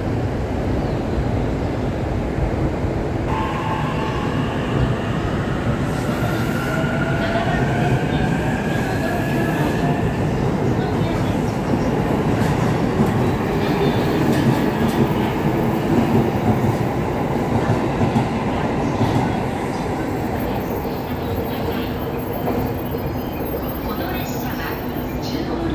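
Electric train running through a station: a steady rumble of wheels and motors, with a rising electric motor whine from about three seconds in to about ten, as a train gathers speed.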